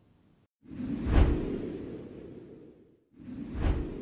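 Two whoosh sound effects of a logo transition, each swelling quickly to a peak and then fading away. The second starts about three seconds in.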